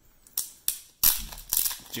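Hard plastic card cases clacking and snapping as they are handled on a tabletop: three sharp clicks, the loudest about a second in.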